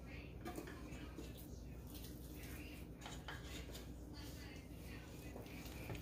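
Faint clinks and scrapes of a stainless steel mixing bowl against the nonstick pan of a multi-cooker as raw ground meat is tipped and scraped out into it.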